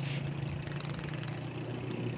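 An engine running steadily with a low, even hum.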